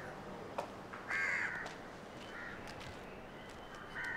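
A crow cawing: one loud caw about a second in, and a shorter, fainter one about a second later.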